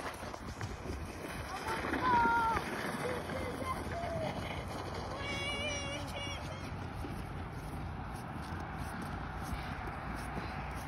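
Faint voices shouting and calling out across the hill, loudest about two seconds in, with a higher-pitched cry around the middle, over a steady low outdoor rumble.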